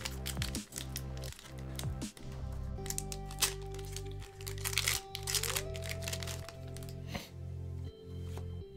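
Foil Pokémon TCG booster pack wrapper crinkling and crackling as it is torn open and handled, in many quick irregular crackles. Background music with steady low bass notes plays underneath.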